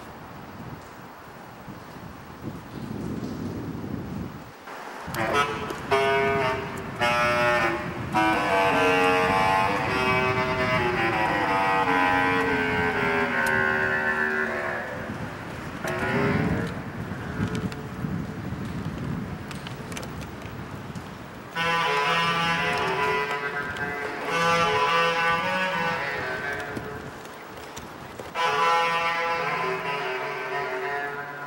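Bass clarinet playing: a long phrase whose notes slide downward, a pause filled with low rumble, then more held notes from about two-thirds of the way in.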